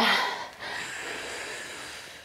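A woman breathing hard close to the microphone while exerting herself: a long, breathy exhale that holds steady for over a second.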